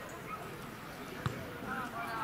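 A football kicked once, a single sharp thud about a second in, over distant voices calling on the pitch.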